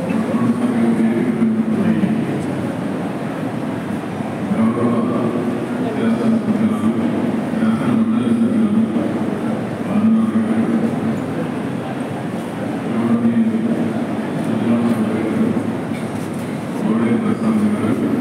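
A man's speech amplified through public-address loudspeakers, loud and continuous with short pauses between phrases.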